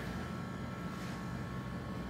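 Steady room tone: a low hum with a faint, even hiss.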